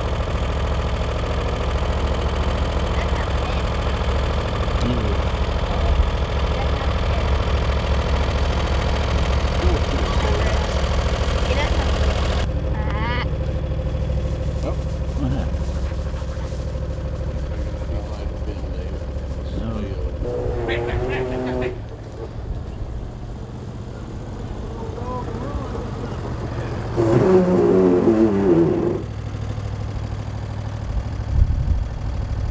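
A steady, low engine-like hum, like an idling motor, runs throughout. Over it a person's voice calls out briefly twice: once about two-thirds of the way in, and louder near the end.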